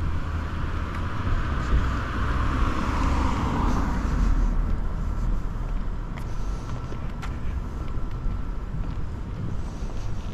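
A car passing on the street beside the sidewalk, its tyre and engine noise swelling and then dropping in pitch as it goes by, about three to four seconds in, over a steady low rumble of street noise.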